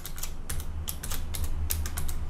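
Computer keyboard being typed on: a string of quick key clicks at an uneven pace as a short word is typed.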